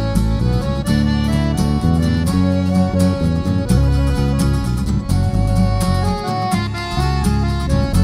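Instrumental waltz played by accordion with guitars and violin, with no singing.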